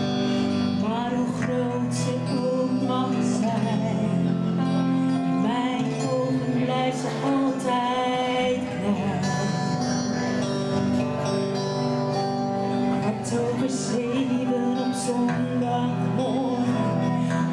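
A woman singing a slow song live into a handheld microphone, accompanied by two electric guitars.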